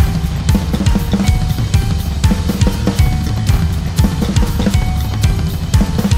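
Full acoustic drum kit played fast in a solo: dense, rapid strokes on snare and toms over the bass drum, with cymbals.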